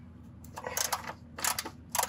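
Socket ratchet clicking in a few short bursts as it turns a 10 mm bolt, starting about half a second in.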